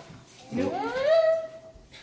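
A high, wordless vocal call that glides up in pitch and then holds for about a second.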